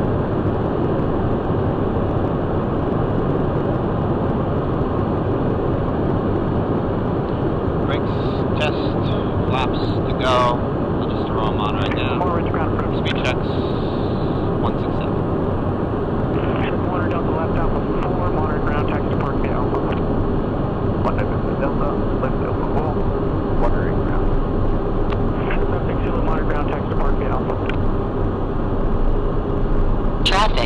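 Steady cockpit noise of a Cessna Citation 501 business jet in flight on approach: its twin turbofan engines and the airflow make a constant rushing hum, and a steady tone joins in about halfway.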